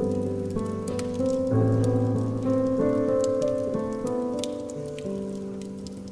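Slow piano playing, held notes and chords changing every second or so, over a wood fire in a fireplace crackling with many small pops.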